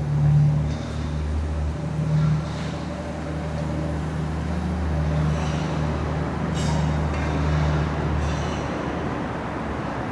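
A vehicle engine running steadily, a low rumble.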